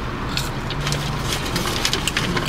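Steady low hum inside a car cabin, with faint crisp sounds of fries being chewed during the first second.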